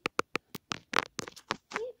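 A quick, irregular run of sharp clicks and taps, about a dozen in two seconds, from hard objects being handled close to the microphone. A brief voice sound comes near the end.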